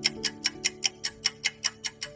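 Countdown-timer ticking sound effect, quick even ticks about five a second, over soft sustained background music.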